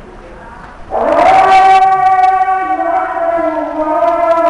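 A loud chanted call to prayer: a man's voice slides up into a long held note about a second in, then steps down to a lower held note near the end.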